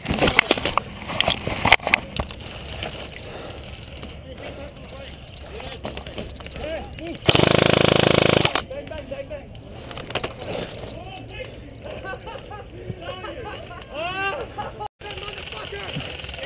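Distant shouting voices of players across an airsoft field, with a few sharp cracks in the first two seconds. About seven seconds in, a loud burst of rushing noise lasts over a second.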